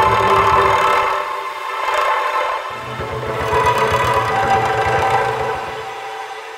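Omnisphere 'Broken Cello Swirling Space' patch, a texture made by bouncing a bow on the strings of a cello. Held swirling tones sound over a fast low pulsing, and the low pulsing drops out about a second in and comes back a little before the halfway point.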